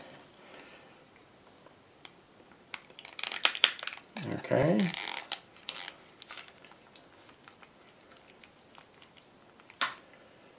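Off-camera handling noise: two short spells of crinkling and rustling about three and five seconds in, then a single click near the end.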